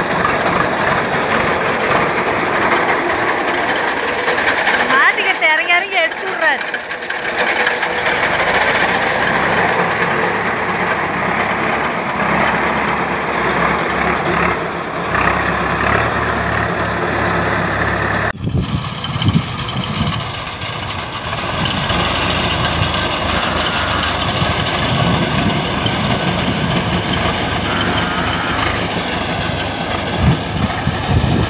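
Tractor engine running as it works a sorghum field with a rear-mounted cutter, with people talking over it. The sound changes abruptly about two-thirds of the way through.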